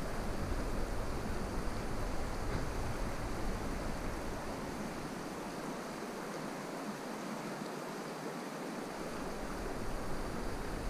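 Shallow river running over stones, a steady rushing hiss of moving water, with a low rumble underneath that fades out about halfway through.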